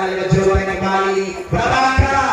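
A man's voice talking, with a steady low hum underneath.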